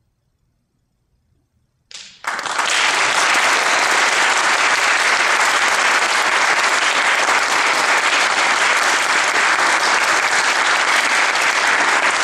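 Near silence for about two seconds, then audience applause breaks out suddenly and continues steadily.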